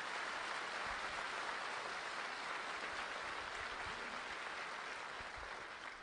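Audience applauding, a steady wash of clapping that eases slightly near the end.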